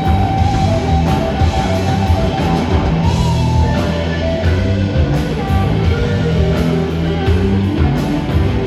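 Live rock band playing with electric guitars, bass guitar and drum kit, loud and continuous.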